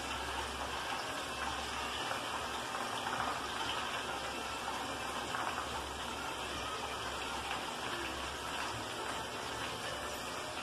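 A wide aluminium pot of white, frothy liquid boiling hard on a gas burner, bubbling steadily.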